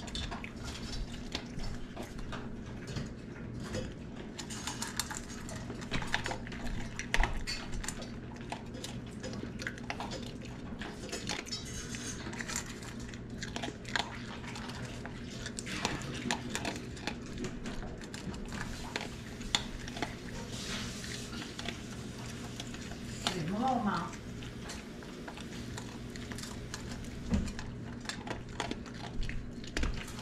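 A chihuahua eating dry kibble from a stainless steel bowl: a steady run of small clicks and clinks as the kibble and its teeth knock against the metal bowl.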